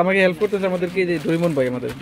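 A man talking, in a voice that holds its pitch on drawn-out syllables.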